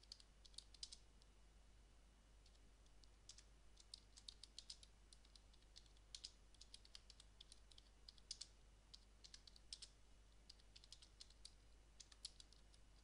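Faint computer keyboard typing: runs of quick keystroke clicks with short pauses between words, including a longer pause of about two seconds a second in.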